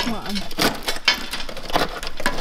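Rusted-through sheet steel of a Mercedes W220 S500's rocker panel crackling and clinking as corroded flakes and pieces are broken away by hand, with several sharp cracks. The sill is rotted through and needs welding or replacing.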